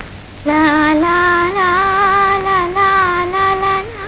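A woman singing a slow melody to herself without accompaniment, starting about half a second in, in a few phrases of long held notes.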